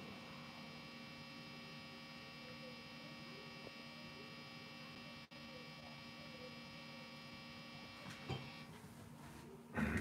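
Low, steady electrical hum and buzz from a plugged-in electric guitar rig left sitting while it isn't being played; it cuts out near the end, with a faint knock just before.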